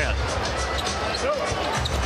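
Live basketball game sound in a big arena: a steady crowd hum, sneakers squeaking on the hardwood court and a basketball bouncing.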